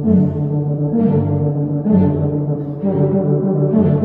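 Tuba playing a sustained melody in its low range, moving from note to note about once a second, with violins playing along.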